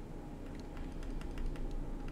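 Light, irregular clicks and taps of a digital pen on a tablet or screen surface during handwriting, over a faint low hum.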